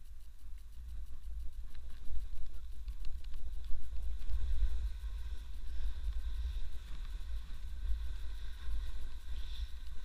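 Wind buffeting an action camera's microphone as a snowboard runs downhill, heard as an uneven low rumble, with a faint hiss of the board sliding on snow.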